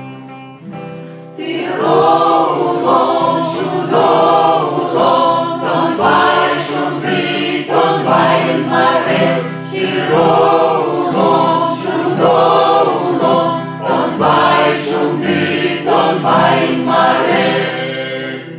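Choir of mixed voices singing an Udmurt folk song to acoustic guitar accompaniment. The guitar chords ring alone at first, and the voices come in about a second and a half in, singing in repeated phrases of roughly two seconds.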